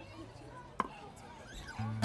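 Low murmur of voices on a stage between songs, broken by a single sharp knock about a second in. Near the end a guitar note starts to ring as the next song begins.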